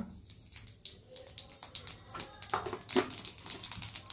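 Irregular sharp pops and crackles from hot oil in a small steel tempering pan on a gas burner, spluttering as ingredients go in.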